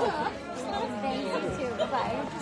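Chatter: several people talking at once in a large room, with no one voice standing out.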